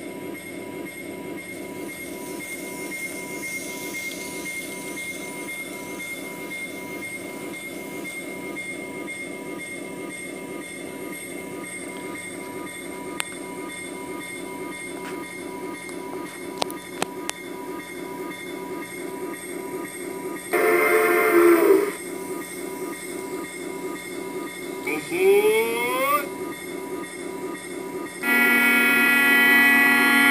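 A model-railroad sound unit (MRC Sound Station) plays locomotive running sounds through a small speaker, a steady, evenly repeating rumble. A horn sounds twice over it, briefly about two-thirds of the way in and again for a couple of seconds near the end, with short rising tones in between.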